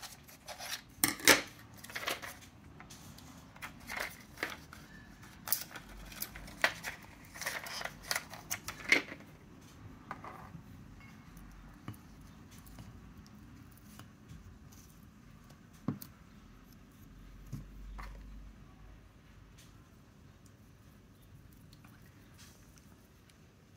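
Scissors snipping and crunching through a foil blister pack: a quick run of sharp cuts over the first nine seconds or so. Then quieter handling, with a single sharp tap about two-thirds of the way through.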